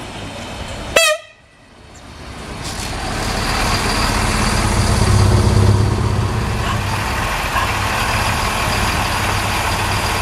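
Siemens Desiro diesel multiple unit giving a very short horn toot about a second in, then its diesel engine hum and wheel rumble growing louder as it rolls in alongside, peaking after about five seconds and settling to a steady engine hum as it stands.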